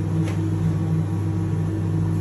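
Steady low hum of commercial kitchen fans, with a faint click just after the start.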